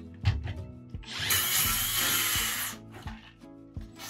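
18V cordless 165 mm circular saw cutting into the wooden floor for about two seconds, starting about a second in, with a few small knocks around it. The saw's blade is dulled and the 18V saw is short on power for this demolition cut.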